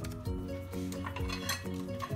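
Background music: a melody of short held notes changing about four times a second over a steady bass, with a few faint clicks.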